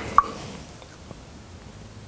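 Quiet room tone, with one short tap just after the start and a fainter tick about a second in.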